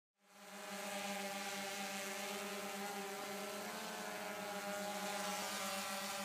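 Quadcopter drone hovering overhead: the steady buzzing whine of its propellers, fading in at the start and holding level with a slight wobble in pitch.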